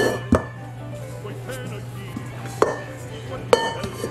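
Stainless steel stand-mixer bowl knocking against the counter and mixer base as risen bread dough is tipped out of it: three sharp knocks, one just after the start, then two more near the end.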